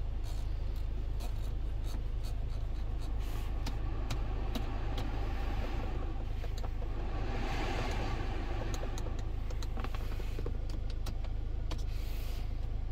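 Kia Sorento engine idling, heard from inside the cabin as a steady low hum, with scattered clicks from the climate-control buttons and panel being handled. A rush of air swells and fades around seven to eight seconds in.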